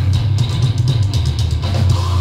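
Deathcore band playing live: heavy, low-tuned distorted guitars and bass over fast, evenly spaced drum hits.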